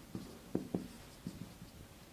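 Marker pen writing on a whiteboard: a quiet series of short taps and scratches as characters are written stroke by stroke.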